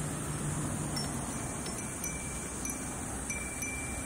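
Glass fūrin wind bells ringing lightly in the breeze, thin clear tones sounding on and off. A steady low rumble runs underneath.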